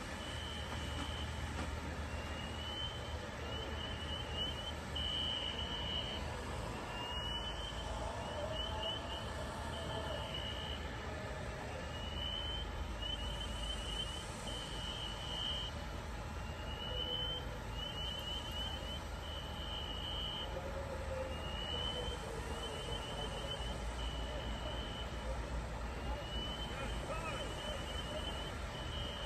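Fire apparatus engine running steadily at a house fire while its aerial ladder pumps a water stream. Over it, an electronic alarm repeats a cycle of a rising sweep, a quick run of chirps and a steady beep, about every five seconds.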